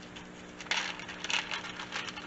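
Dry, crinkly rustling as a white sage smudge stick is picked up and handled, in a few short bursts beginning a little under a second in.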